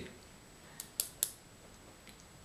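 Three short, sharp clicks in quick succession about a second in, over quiet room tone.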